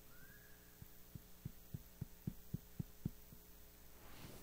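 A run of about ten soft, muffled low thumps, roughly three a second, over a faint steady hum.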